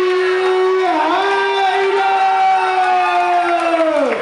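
One long drawn-out call from a voice, held on a high pitch with a brief dip about a second in, then falling off at the end, as an announcer stretches out a fighter's introduction over crowd noise in a hall.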